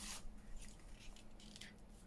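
A few faint, brief rustles of paper as cut paper pieces are handled and laid down onto a paper card.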